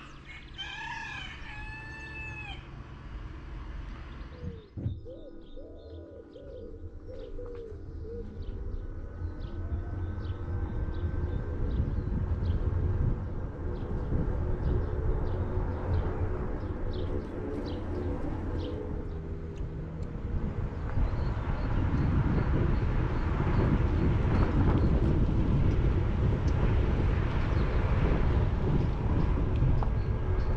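Birds calling in the first few seconds, with a cooing call near the five-second mark. After that, a low rumble of wind and movement noise on a moving camera's microphone grows louder and takes over, with a few faint bird chirps above it.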